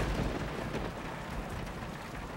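Steady background hiss with a low rumble underneath, even throughout, with no distinct events.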